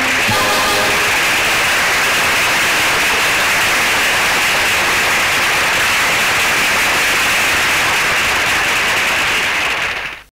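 A last musical note cuts off right at the start, then a loud, steady hiss-like noise on an old film soundtrack holds evenly and fades out sharply at the end.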